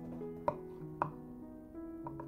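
Kitchen knife slicing through a boiled, skin-on potato and knocking down onto a wooden cutting board twice, about half a second apart, over soft piano music.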